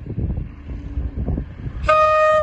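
Low rumble with wind buffeting the microphone as a pair of Class 37 diesel locomotives approach. Right at the end a Class 37 horn starts with its first loud, steady tone.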